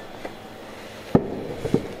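A person sitting down in an armchair with the camera in hand: a light click, then a sharp thump about a second in and a second, smaller thump half a second later.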